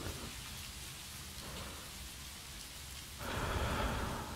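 Steady rain ambience with a low rumble under it. Near the end a breathy exhale swells for about a second.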